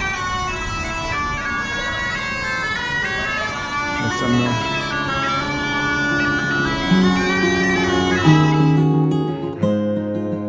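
Street bagpipe playing a melody over its steady drone. Near the end the street sound cuts off and strummed acoustic guitar music takes over.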